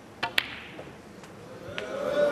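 Snooker shot: the cue tip strikes the cue ball, and a fraction of a second later the cue ball clacks sharply into the black, the loudest sound here, as the black is potted. Two fainter knocks follow later.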